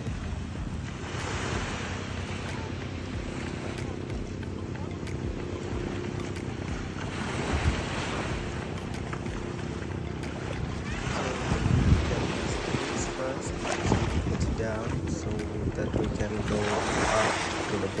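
A boat engine running steadily under wind buffeting the microphone and the wash of water, the noise swelling every few seconds.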